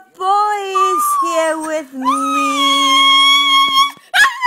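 A woman singing a slow tune, then holding a long note; about halfway through, a Shih Tzu joins in with a high, held howl.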